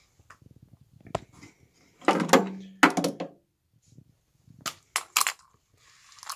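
Electrolux vacuum floor tools with chrome elbows being handled, set down and picked up on a hard floor: a series of knocks and clatters, the loudest about two seconds in with a short ring, then a few lighter clicks near the end.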